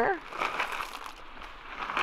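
Dry cat food kibble poured from a plastic bag into the tube of a dog-proof raccoon trap, a rattling rush for about a second that then dies away.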